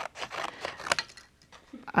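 Scissors snipping through a greeting card: a few short, crisp cuts, the sharpest about a second in.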